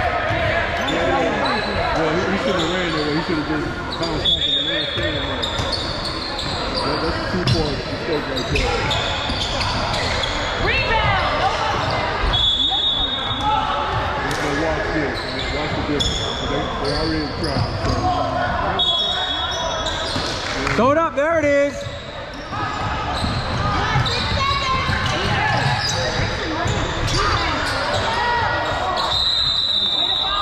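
Basketball game in a gym: the ball bouncing on the court amid spectators' and players' voices, echoing in the large hall.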